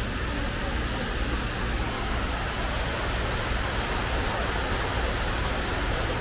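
Steady rushing of water pouring down the walls of a 9/11 Memorial reflecting pool, an even, unbroken waterfall sound.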